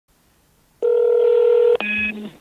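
Telephone line tones as an outgoing call is placed: a steady electronic tone for about a second, a click, then a different tone starting just before the end.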